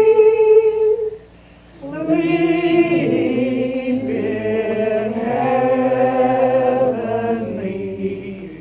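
Singing played back from a roughly 60-year-old home reel-to-reel tape recording: slow, held notes, breaking off a little over a second in, then resuming.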